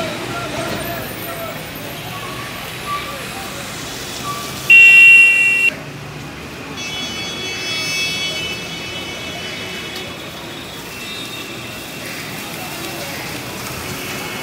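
Street traffic noise with voices in the background; about five seconds in a vehicle horn sounds one loud blast of about a second, followed by a quieter horn held for about two seconds.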